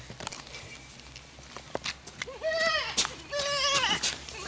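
A few faint clicks and shuffles, then two drawn-out, high-pitched vocal calls without words, about half a second each, in the second half.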